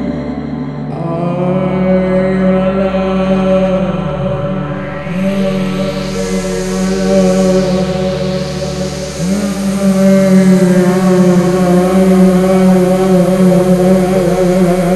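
Experimental electronic drone from a VCV Rack virtual modular synth patch, with a woman's wordless improvised voice holding long, chant-like notes. A rising wash of hiss joins about five seconds in.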